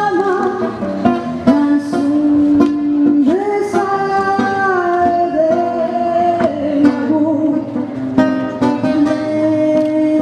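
A woman singing a milonga in long held notes, accompanied by a plucked acoustic guitar.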